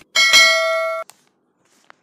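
Subscribe-animation sound effect: a mouse click, then a loud, bright notification-bell ding that rings for about a second and cuts off suddenly.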